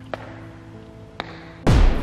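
Background music with sustained notes and two faint ticks, then near the end a loud, quick sound effect that sweeps down in pitch from very high to very low.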